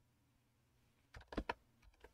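Computer keyboard keys being typed: a quick run of about five keystrokes starting about a second in.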